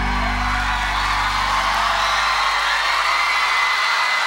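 The final held chord of a pop ballad dies away, fading out near the end, while a studio audience cheers and screams over it.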